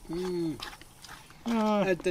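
A man's voice: a short closed-mouth "mm" of tasting just after the start, then a longer drawn-out vocal sound with a falling pitch near the end.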